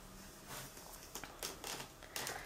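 Faint scattered rustles and soft taps from a person moving and handling things in a small room, a handful of short ones from about half a second in.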